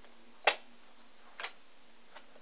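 Playing cards set down on a tabletop: two sharp snaps about a second apart, the first louder.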